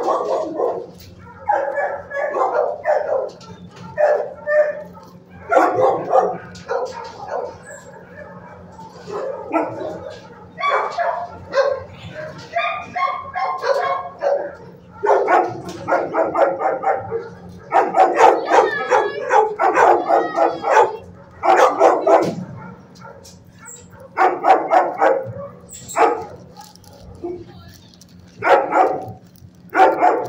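Dogs barking and yipping in an animal shelter kennel, in repeated bursts with short gaps, over a faint steady hum.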